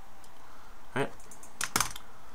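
A quick run of computer keyboard key clicks in the second half, just after a spoken word.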